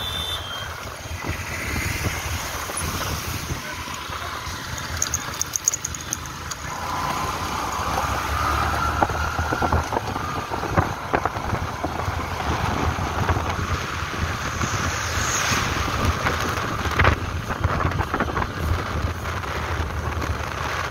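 Motorcycle engine running while riding along a street, with wind buffeting the microphone; it gets louder about a third of the way in.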